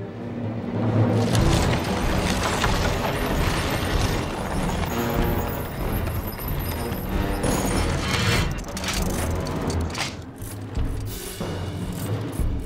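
Dramatic orchestral film score that swells about a second in, layered with deep booming sound effects.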